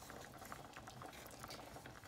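Faint bubbling and small pops of cornmeal cooking in hot okra water in a stainless steel pot, with a wooden spoon stirring it constantly to keep it from lumping.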